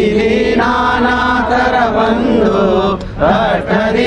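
Devotional chant to Guru Datta sung to music, the voices holding long notes. The singing breaks off briefly about three seconds in.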